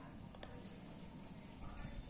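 Faint, steady high-pitched pulsing trill in the background, with a ballpoint pen writing quietly on paper and a single small click about half a second in.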